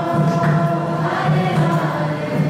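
Devotional kirtan: a group of voices singing a chant together over a steady low drone, with a faint percussive strike now and then.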